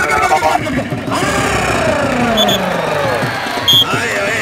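A kabaddi commentator's voice over a loudspeaker, drawing out one long call that falls slowly in pitch, above the hum of a crowd. Two short, high whistle pips sound near the end, the second one louder.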